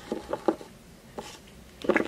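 Light taps of a small plastic toy figure being hopped and set down on a desk, a few quick taps early on and one more about a second in, with a voice starting just at the end.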